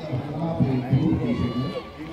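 Voices of players and spectators talking and calling out over one another, with a low crowd murmur behind.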